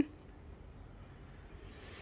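Faint outdoor background noise, with one brief, thin, high chirp about a second in.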